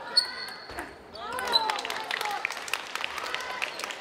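Table tennis ball clicking off bats and table in a doubles rally, the sharpest click just after the start. Players' voices shout twice, briefly at the start and again from about a second in.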